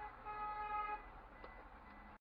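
Car horn honking. One steady honk runs for about three-quarters of a second, starting about a quarter second in, over low road rumble.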